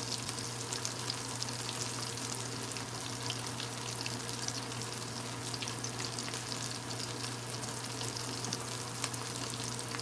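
Breaded calamari rings sizzling steadily in hot oil in a pan, with a fine crackle of small pops as they are turned with tongs.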